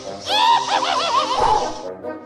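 Witch's cackling laugh sound effect: a high, wavering cackle lasting about a second and a half, played over spooky background music.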